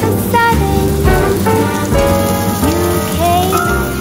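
Background music with a gliding melodic line, over a steady sizzle of prawns frying in hot oil in a stainless steel pan.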